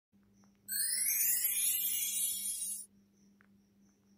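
Synthesized logo-intro sound effect: a bright rising sweep that starts under a second in and cuts off about two seconds later, over a faint steady hum.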